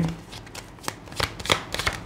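Tarot cards being handled: a few short, sharp card clicks and flicks, mostly in the second half.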